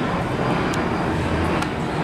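Steady low mechanical rumble with a constant low hum, and two faint clicks.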